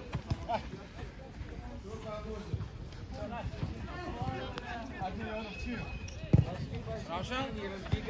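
A football being kicked and passed on an artificial pitch: a few sharp thumps, the loudest about six seconds in, among shouted calls of players and a coach.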